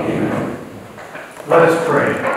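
A priest speaking: a man's voice that trails off, then starts again sharply about one and a half seconds in.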